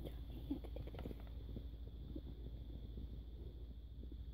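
Kittens eating wet cat food from a plastic bowl: faint, irregular chewing and lapping clicks over a steady low hum.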